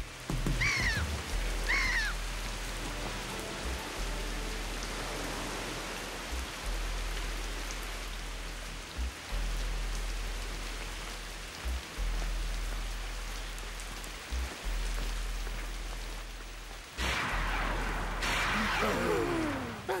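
Heavy rain pouring steadily over a low storm rumble, with two short falling gull cries about a second in. The sound swells louder, with sliding tones, in the last few seconds.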